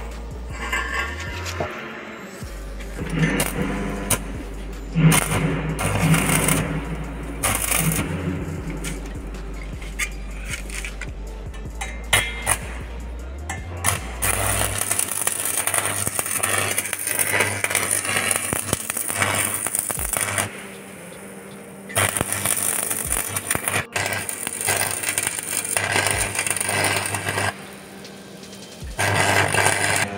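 Background music with a steady bass line. Over the second half, an electric stick (arc) welder crackles and hisses in several bursts a few seconds long as a steel angle-iron frame is welded.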